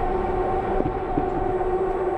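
A dark sustained drone in the soundtrack: two steady tones an octave apart over a low rumble, holding unchanged.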